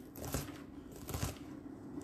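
Ceramic knife chopping through a bunch of fresh green beans on a cutting mat: several short, crisp snaps as the blade cuts down through the beans.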